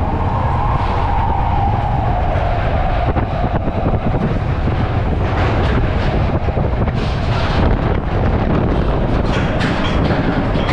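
Matterhorn Bobsleds car running along its tubular steel track: a continuous wheel rumble and rattle with scattered clacks, and a faint hum that sinks a little in pitch over the first few seconds.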